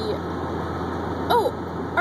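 Steady car engine and road noise heard from inside the cabin of a moving car, with a short vocal sound a little over a second in.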